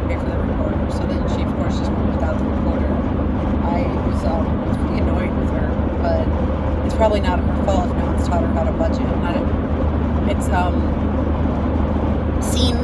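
Steady road and engine rumble inside the cabin of a moving car, with a woman talking quietly over it at times.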